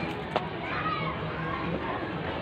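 Voices in the background, among them a child's high voice, with one sharp click about a third of a second in.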